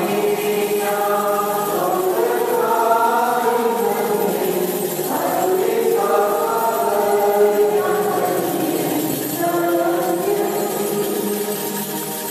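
Church choir singing a slow hymn in long held notes, with new phrases starting about five seconds and nine seconds in.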